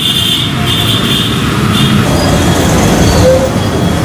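Loud, steady outdoor street noise: a dense low rumble, with a faint high whine during the first two seconds.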